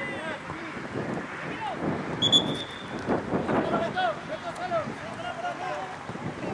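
Referee's whistle blown once, a short shrill blast about two seconds in, calling a foul. Distant shouting from players and spectators runs underneath.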